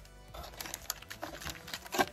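Light, irregular clicks and rustles of foil booster packs and cards being handled inside a cardboard box, with a sharper knock near the end.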